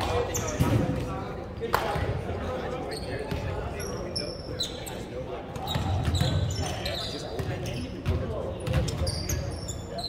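Volleyball play on a hardwood gym floor: the ball bounced and struck, with a sharp smack a little under two seconds in, sneakers squeaking now and then, and players' voices, all echoing in the large hall.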